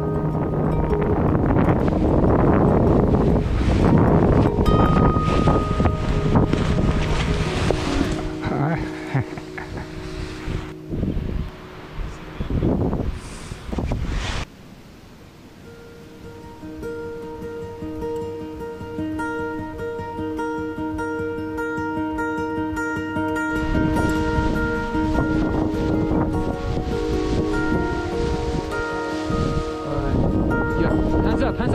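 Fingerstyle acoustic guitar music over wind buffeting the microphone. The wind noise cuts away about halfway through, leaving the guitar alone, and comes back near the end.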